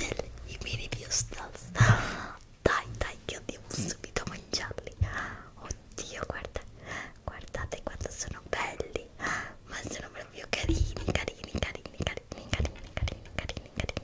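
A woman whispering, with many short, sharp clicks scattered between the whispered phrases.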